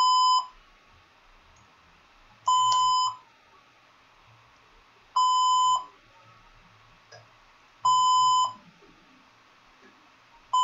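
An electronic beeper sounding one steady, high beep about half a second long, repeating regularly every two and a half to three seconds; four beeps in all, the first already sounding at the start.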